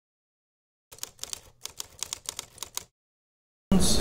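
Typewriter keys clacking in an irregular run of about a dozen strokes lasting two seconds, then stopping. A woman starts speaking just before the end.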